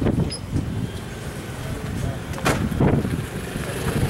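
Indistinct voices over a low rumble, with one sharp knock about two and a half seconds in.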